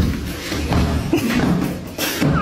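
A cat pawing at a glass door, with dull thumps and rattling of the door.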